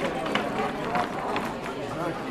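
Voices of people talking in the background, an indistinct hubbub of conversation, with a few short clicks.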